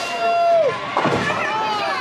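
A drawn-out vocal "oh" as the bowling ball rolls. About a second in, the ball hits the pins with a sharp crash, followed by more exclaiming.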